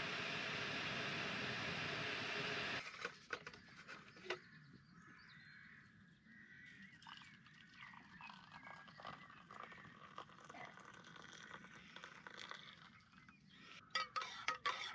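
Jetboil backpacking stove burner running with a steady hiss, then shut off suddenly about three seconds in, followed by a few clicks. Hot water is then poured faintly into an enamel mug, and a spoon clinks against the mug near the end.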